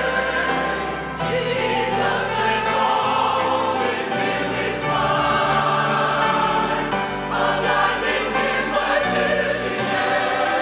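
Mixed church choir of men and women singing a hymn verse in sustained chords.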